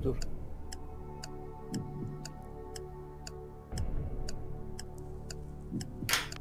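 Quiz-show countdown timer sound effect: a clock ticking about twice a second over a low, sustained music bed.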